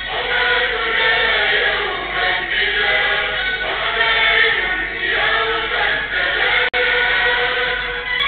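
A small group of schoolgirls singing a national anthem in unison into a microphone, in long held notes. The sound drops out for an instant near the end.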